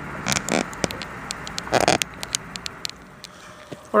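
Tobacco pipe being puffed: a string of small lip-smacking clicks with a few short, breathy puffs.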